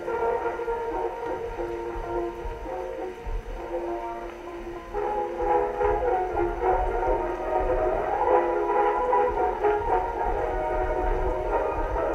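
A WWI-era record playing on a 1914 Victrola VV-X acoustic phonograph, its music thin and held to the middle range. Beneath it runs a low rumble of distant artillery, heavier from about five seconds in.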